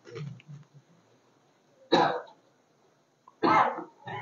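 A man coughing twice into a microphone, about two seconds in and again near the end.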